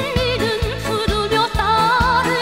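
A woman singing with wide vibrato over an electronic band accompaniment with a steady drum beat.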